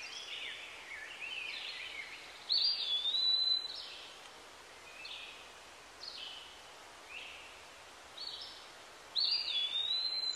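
Birds calling over a faint steady hiss. Two louder calls, about two and a half seconds in and again near the end, each rise quickly into a held whistle lasting about a second. Fainter short chirps come between them.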